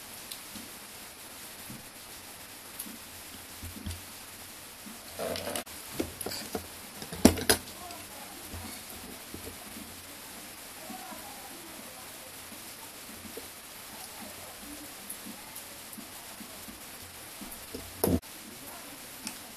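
Small parts being handled on a workbench: scattered clicks and taps, busiest between about five and eight seconds in, with one sharp click near the middle, over a steady hiss.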